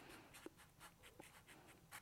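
Faint strokes of a marker pen writing letters on paper: a series of short, soft scratches as each letter is drawn.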